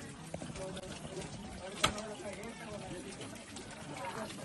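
Indistinct voices talking in the background, with one sharp click or knock a little under two seconds in.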